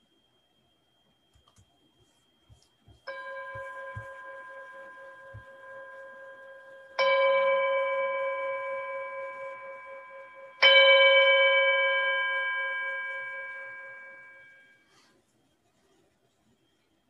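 A meditation bell struck three times a few seconds apart, each strike louder than the last; the final stroke rings out and fades over about four seconds. The bells mark the close of a guided contemplation.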